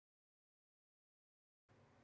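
Near silence: dead digital silence, with faint room hiss returning near the end.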